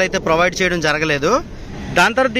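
A man speaking, then a steady outdoor background noise for the last half second or so.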